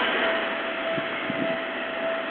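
Steady rushing background noise with a continuous high-pitched tone running through it, and a few brief low knocks about a second in.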